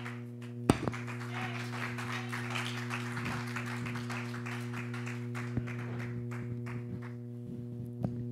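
Steady electrical hum from a church PA system, a low tone with a ladder of overtones. A sharp knock comes about a second in, then several seconds of scratchy crackling from a microphone being handled.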